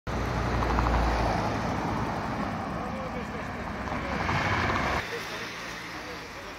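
Road traffic passing close by, with people talking in the background. The traffic noise drops off abruptly about five seconds in.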